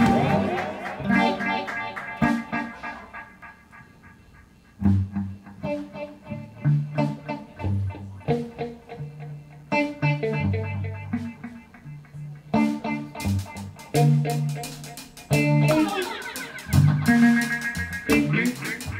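Live electric guitar and electric bass: guitar chords ring out and fade over the first few seconds, then bass notes come in about five seconds in under guitar picking. Sharp percussive strokes join from about thirteen seconds in.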